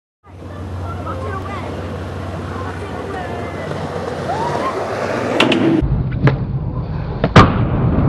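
Skateboard wheels rolling over the skatepark surface with a steady hum, then sharp clacks of the board from about five and a half seconds in, the loudest near seven and a half seconds.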